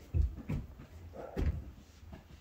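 Three dull thumps: two close together near the start and a third about a second and a half in.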